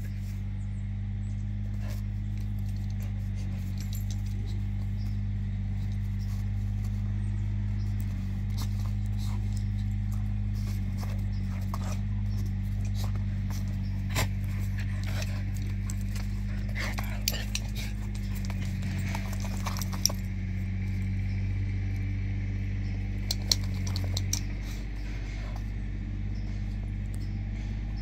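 Two dogs play-fighting, with short growls and scuffling sounds scattered through, most of them in the middle and near the end, over a steady low hum.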